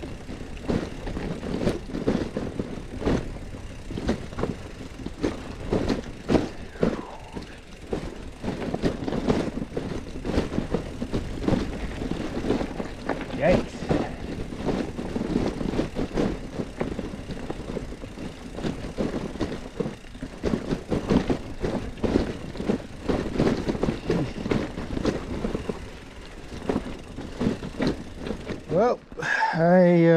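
Loaded bikepacking mountain bike rattling and clattering over rocks and roots on a rough downhill trail, with a continuous jumble of knocks and wind rush on the handlebar-mounted camera.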